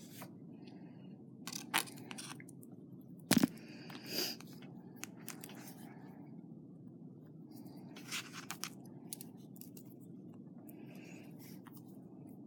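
Scattered small clicks and scrapes of butterfly beads and thin craft wire being handled and twisted, the sharpest click about three and a half seconds in, over a steady low hum.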